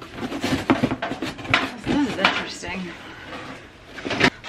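A cardboard box of metal cake and muffin pans being handled and shifted: a run of sharp knocks, clatters and cardboard scrapes as the box and the pans inside are moved.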